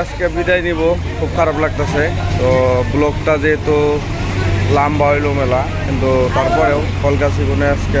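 People talking close by, with the steady low hum of an idling vehicle engine underneath from about a second in.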